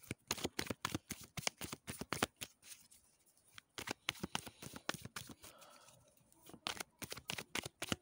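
A deck of oracle cards being shuffled by hand, made up of many quick snaps and rustles of card stock, with two brief pauses in the shuffling.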